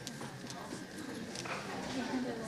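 Footsteps and scattered knocks of people getting up and moving about the room, with faint chatter underneath.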